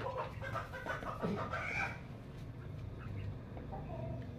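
Chickens clucking, a handful of short calls mostly in the first two seconds, over a low steady hum.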